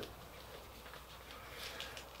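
Quiet workshop room tone with a low steady hum, and faint rustling and light ticks as a face mask's straps are fitted behind the head.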